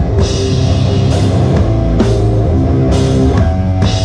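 Live death metal band playing, heard from a camera close above the drum kit: fast drumming with a dense kick-drum low end and a cymbal crash about once a second, over sustained heavy chords.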